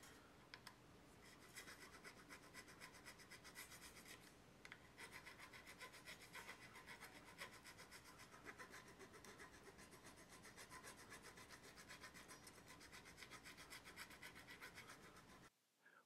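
Nut slotting file rasping back and forth in a slot of a cow-bone guitar nut: faint quick strokes, about four a second, with a short pause about four seconds in.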